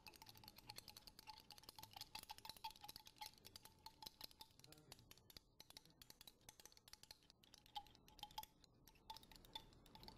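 A thin glass stirring rod clinking rapidly and continuously against the inside of a small glass flask as an oil, water and detergent mixture is stirred into a milky emulsion. The clinking is faint, many light ticks a second with a thin glassy ring.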